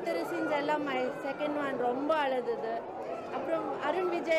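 Speech only: a woman talking without pause.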